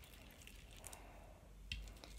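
Quiet handling noise from homemade glue slime being worked by fingers in a cup: faint squishing, with a couple of small clicks about a second in and near the end.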